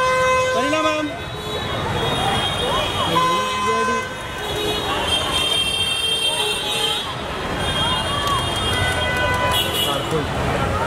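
Vehicle horns honking over street noise and people talking, one sounding near the start and another about three seconds in.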